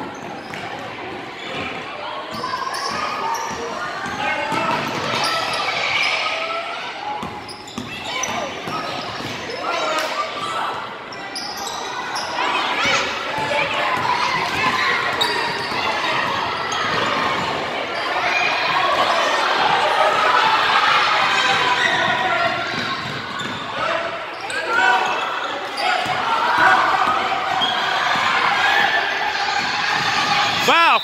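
Basketball being dribbled on a gym's hardwood floor amid the continuous chatter and calls of players and spectators, echoing in the large hall.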